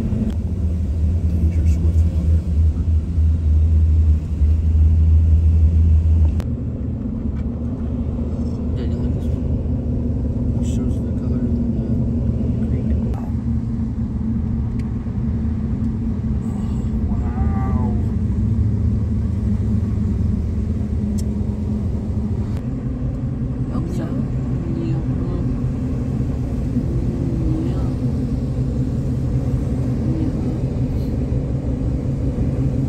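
Road and engine rumble inside a moving car: a heavy low rumble for about the first six seconds, then a sudden drop to a lighter, steady drone.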